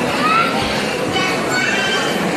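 Indistinct chatter of shoppers in a large store, with a short high-pitched rising squeal about a quarter second in and a few more brief high tones in the second half.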